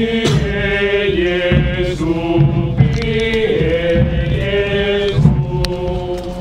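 Voices singing a slow liturgical chant in long, held notes that step from pitch to pitch about once a second.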